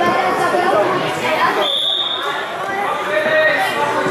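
Overlapping voices of people talking in a large hall, with a single short, steady, high whistle-like tone about halfway through.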